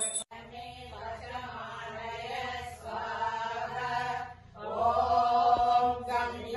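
Voices chanting a Sanskrit devotional recitation in a steady sing-song, with a short pause between phrases about four and a half seconds in. A ringing bell is cut off abruptly just at the start.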